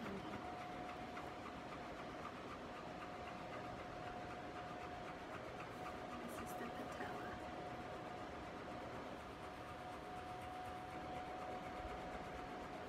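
Quiet, steady background hum with a constant thin whine running through it that cuts off near the end.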